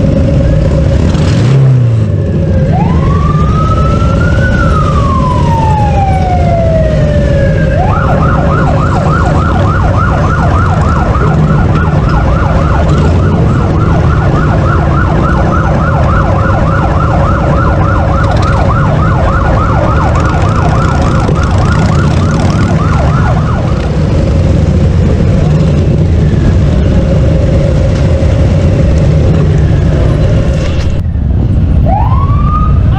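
A siren wails up and down once, then switches to a fast yelp for about fifteen seconds before stopping, over the steady low rumble of Harley-Davidson V-twin motorcycles riding at parade pace.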